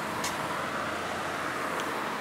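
Road traffic passing outside: a steady rush of vehicle noise that swells gently, with a couple of faint clicks.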